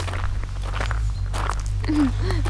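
Footsteps on a gravel path, a few separate steps, over a steady low rumble on the microphone. A voice starts right at the end.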